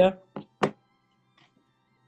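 Two short thunks of handling noise, close together, as a video-call camera is picked up and turned, just after a man's brief 'yeah'.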